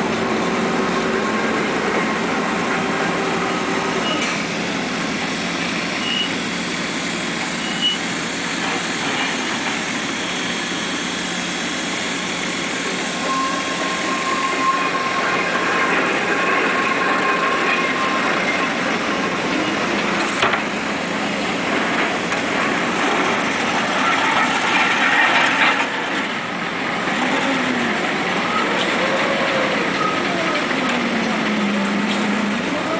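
Marion Model 21 electric shovel digging: its electric motors and gearing run with a steady whine and mechanical clatter. The motor pitch rises and falls several times near the end, with an occasional sharp clank.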